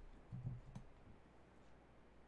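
Near silence with room tone, broken by a faint low bump and a single small click about half a second in.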